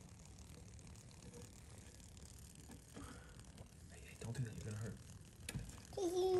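Mostly quiet room tone, with faint murmured voices about four seconds in and a single sharp click near the end.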